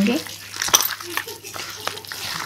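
A hand squeezing and mashing raw minced mutton mixed with oil, spices, onions and coriander in a steel bowl: irregular wet squelching, with a couple of sharp clicks, one under a second in and one near the end.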